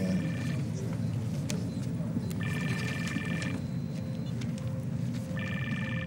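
A telephone ringing on an outgoing call: three rings, each about a second long, roughly three seconds apart, over a steady low background rumble.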